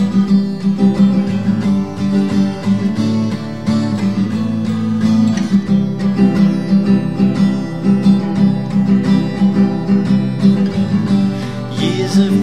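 Instrumental break in a song: acoustic guitar strummed in a steady rhythm, with no singing.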